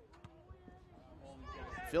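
Faint open-air ambience on a soccer pitch: distant, wavering voices, most likely players calling out, and a few small knocks over a low rumble, growing slightly louder near the end.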